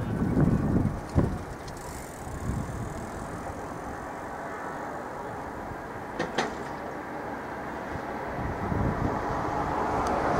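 JR West 207 series electric commuter train moving slowly into a depot track, a steady rolling noise of train and rails. Two sharp clicks stand out, about a second in and about six seconds in, and the noise grows a little louder near the end.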